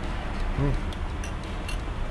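A man eating meatball soup with a spoon: a short murmured "hmm" and a couple of faint clicks, over a steady low background hum.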